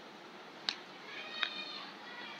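Two sharp clicks about 0.7 s apart, and a faint high-pitched call lasting under a second that starts just before the second click.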